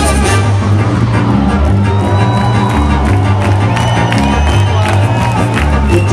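Live drum and bass played loud through a festival PA, heard from within the crowd: the heavy bass line runs on while the drums drop out just after the start and come back near the end, with the crowd cheering and whistling over it.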